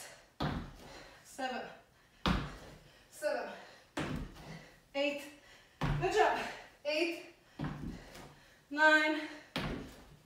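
Sneakers landing on a tile floor in a steady rhythm during alternating crab kicks, about one sharp thud a second. Each thud is followed by a brief vocal sound of effort.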